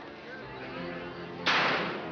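A single sharp rifle shot from a shooting-gallery rifle about one and a half seconds in, dying away over half a second, over quiet background music.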